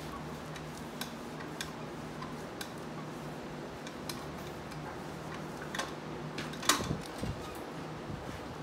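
A shod horse hoof handled on a metal hoof stand: scattered light clicks, then one sharp knock about seven seconds in, followed by a short low thud, all over a steady low hum.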